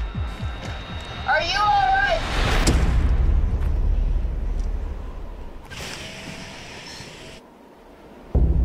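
Trailer sound design: a short wavering high call, then a deep rumbling swell with a sharp hit that slowly fades away.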